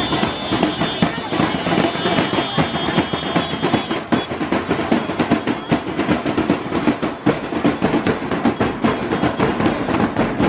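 A marching band's drums beating in a steady rhythm, with people's voices mixed in. A thin, steady high tone sounds over the first four seconds.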